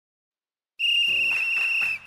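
A single long whistle blast, one steady shrill note, starting a little under a second in and stopping at about two seconds.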